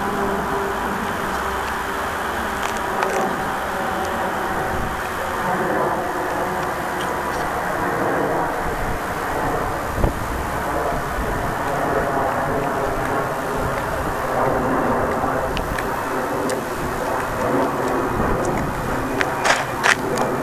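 Steady roadside traffic noise, with a few short sharp clicks.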